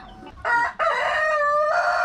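Rooster crowing: a short first note about half a second in, then a long drawn-out note that shifts in pitch near the end.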